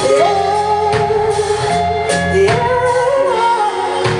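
Live pop ballad: a male lead vocalist holds long notes with vibrato over the band's accompaniment, the melody stepping up in pitch about halfway through.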